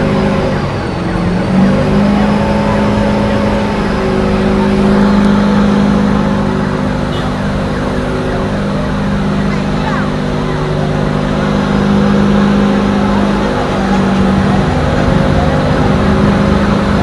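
A loud, steady engine drone at a fire scene. It holds a constant pitch except for a brief dip about a second in, typical of a fire engine's motor or pump running at high speed.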